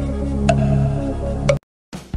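Quiz countdown-timer ticks, one a second, over a steady background music loop. Both cut off abruptly about a second and a half in.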